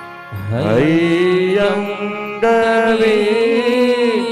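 A man chanting a Sanskrit verse in long, drawn-out notes over a steady drone. His voice slides up into its first note just after the start and moves to a higher held note about halfway through.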